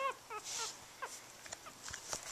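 Two-week-old Pomeranian puppies giving a few faint, short, high squeaks that fall in pitch.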